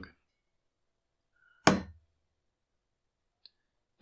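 Near silence, broken a little before halfway by a single short knock with a brief low tail, and a faint tick near the end.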